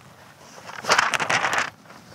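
Paper and cloth rustling as a folded sheet of paper is pulled out of a small satchel: about a second of crinkly rustling around the middle.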